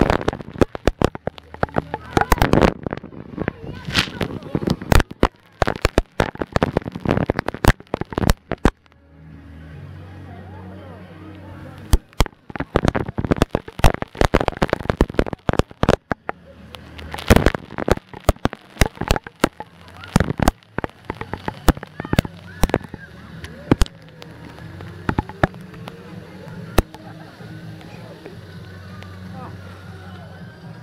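Heavy water-park spray pelting the camera: a dense, irregular crackle of droplet hits with splashing. It thins out toward the end into a steadier wash of noise.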